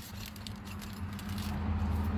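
A steady low hum that grows gradually louder, with faint rattling and ticking from a plastic door handle being handled.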